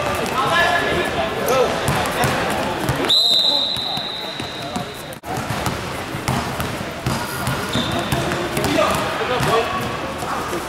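Basketball game in a gym: the ball bounces on the hardwood under echoing shouts of players. About three seconds in, a high steady tone sounds for about two seconds and cuts off suddenly; this is most likely a referee's whistle.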